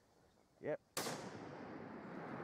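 Delayed report of a long-range .338 Snipetac rifle shot: a sharp crack about a second in that trails off slowly over the next second, coming back off the hillside.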